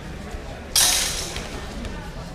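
Steel longswords clashing once in a fencing exchange: a sudden sharp crash about three-quarters of a second in that fades over about half a second.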